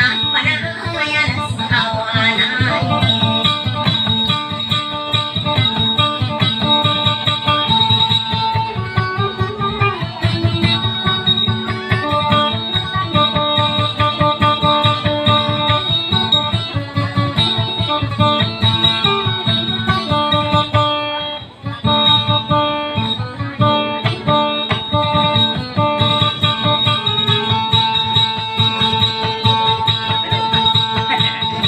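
Acoustic guitar played alone in a Maguindanaon dayunday melody: quick, repeated plucked notes with no singing, and a short break about two-thirds of the way through.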